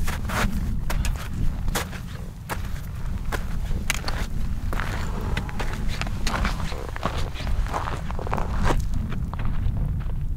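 A hiker's boots stepping across snow and onto loose scree, with trekking-pole tips clicking against the rock in an irregular run of crunches and knocks. The steps grow louder toward the middle as the walker passes close by.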